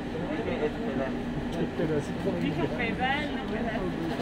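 Indistinct voices talking, with no clear words.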